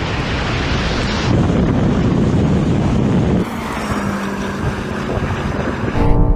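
Wind buffeting the microphone over the rushing noise of an SUV at full acceleration on wet tarmac. About three and a half seconds in, the sound changes abruptly to a steadier, quieter engine and road noise with a low hum.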